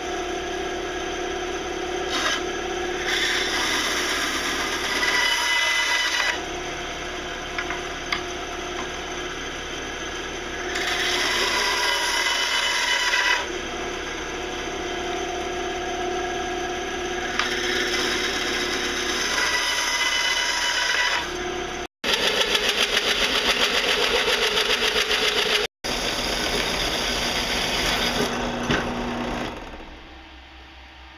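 Band saw running and cutting through a length of pipe three times, each cut a louder spell with a ringing whine over the steady motor. After an abrupt break about two-thirds in, a louder, fast rhythmic chatter of a drill press with a hole saw cutting.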